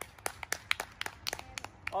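A small group of children clapping for themselves: scattered, uneven hand claps that thin out near the end.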